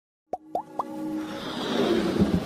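Animated logo intro sound effects: three quick pops that slide up in pitch, about a quarter second apart, followed by a swelling whoosh that builds toward the end over a low held note.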